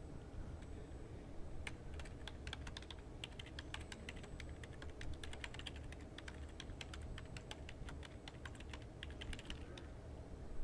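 Computer keyboard being typed on in quick runs of keystrokes, starting a little under two seconds in and going on until just before the end, over a faint low steady hum.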